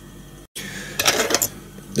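Small fly-tying tools clicking and rattling at the vise while the head of the fly is finished with the tying thread. The sound cuts out suddenly for a moment about halfway through.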